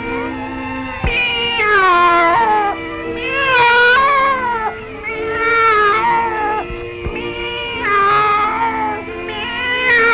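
A cartoon cat caterwauling: about five long, wavering yowls that slide up and down in pitch. Held orchestral notes sound underneath.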